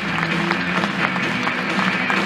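Stadium crowd applauding, many quick claps, with music playing underneath.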